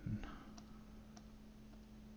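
Faint computer mouse clicks, a few single clicks spaced roughly half a second apart, over a steady low electrical hum.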